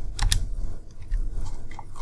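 Computer keyboard keystrokes: two sharp clicks a little after the start, then a few fainter ones.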